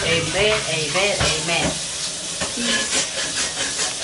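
Food sizzling and crackling in a frying pan, a steady hiss with fine pops. A woman's voice is heard over it in the first two seconds, then the sizzle carries on alone.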